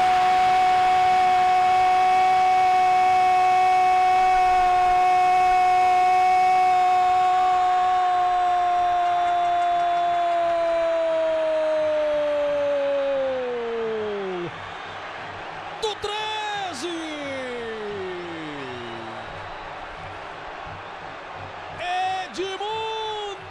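A Brazilian football narrator's drawn-out goal cry, "Gooool", held on one high, loud note for about twelve seconds before his pitch sinks away and stops. A couple of seconds later a second cry slides down in pitch.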